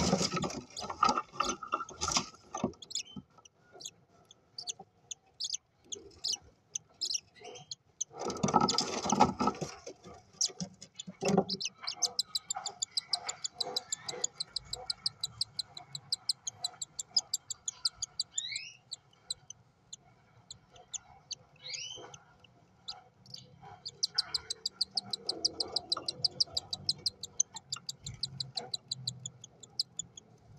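Five-day-old cockatiel chick giving long runs of rapid, evenly spaced high peeps, the food-begging calls of a nestling, with a couple of short rising chirps. Near the start and again about eight seconds in, adult cockatiels move about loudly in the wood-shavings nest litter.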